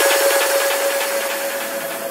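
A wash of white noise slowly fading out after the beat of a sped-up electronic dance track stops, a transition in a nightcore mix.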